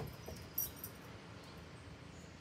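A few faint, light clicks over a quiet background, from a small dog's paws and collar moving across a wooden deck as it goes to touch a hand on cue.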